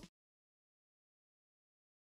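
Silence: the background music cuts off in the first instant and the soundtrack stays empty.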